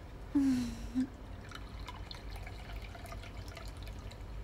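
A porcelain tea set on a tray being handled on a wooden table: a short low scrape early on, another brief one about a second in, then faint light clinks.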